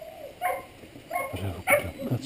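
English setter whining and yelping in short cries while being held and handled, one about half a second in and several more in the last second.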